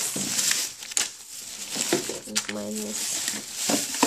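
Plastic shopping bag and soft plastic mayonnaise pouches rustling and crinkling as they are handled and taken out, with a few light knocks as items are set down. A short murmured voice comes in about halfway through.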